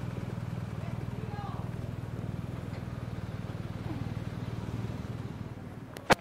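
BMW R 1250 RT motorcycle's boxer-twin engine running steadily at a low, rapid pulse while the bike rides, easing off near the end.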